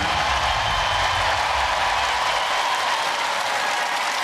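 Large studio audience applauding steadily, a dense even wash of clapping. A low rumble underneath fades out a little past halfway.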